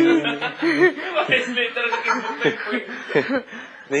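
People snickering and chuckling, mixed with some talk; it quietens near the end.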